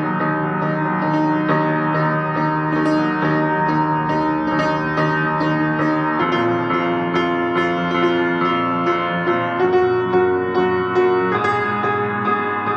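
Solo piano playing a quick run of repeated notes over held chords, with the harmony shifting about six, nine and a half and eleven seconds in.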